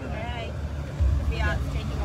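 People talking nearby, unclear and not directed at the camera, over a constant low rumble that grows louder about a second in.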